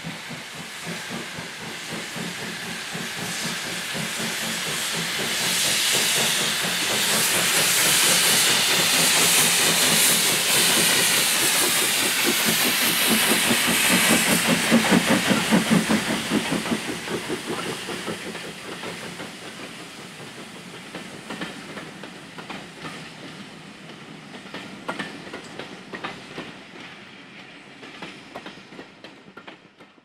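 Steam locomotive working a passenger train past: the steam hiss and exhaust build to a peak as the engine goes by about halfway through. Then the coaches roll past with wheels clicking over rail joints, and the sound fades away.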